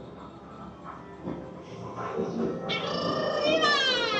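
Amusement arcade background of muffled machine sounds, then, a little under three seconds in, a loud drawn-out meow-like call that falls in pitch for about a second and a half, the kind of sound effect an arcade game plays.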